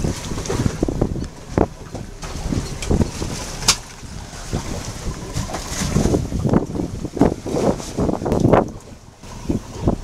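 Gusting wind buffeting the microphone on an open boat, an uneven low rumble that swells and drops. A single sharp click comes about four seconds in.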